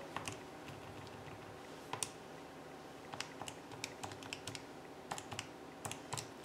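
Faint, irregular clicks of a Texas Instruments TI-84 Plus graphing calculator's keys being pressed one at a time: about a dozen key presses as a command is keyed in.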